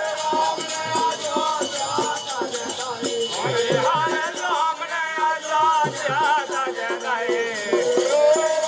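Bundeli Rai folk music: a barrel drum beats a quick, steady rhythm under constant rattling, jingling percussion, with a melody that wavers and glides in pitch over it.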